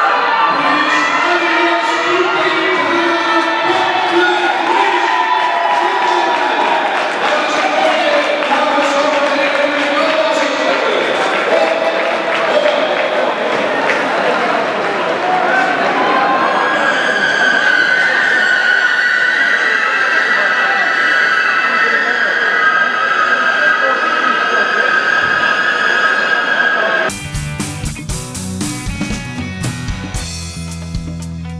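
Crowd noise and music over the public address in an indoor ice rink at the finish of a speed-skating race. About 27 seconds in, this cuts abruptly to a music track with guitar and drums.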